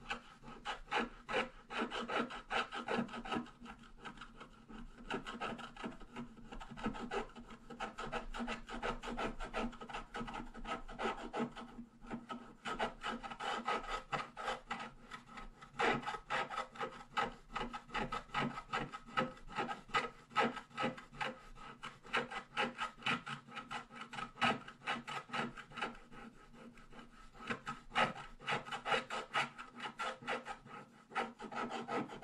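Wooden scratch stylus scraping the black coating off a scratch-art card in rapid short back-and-forth strokes, with a brief pause about twelve seconds in.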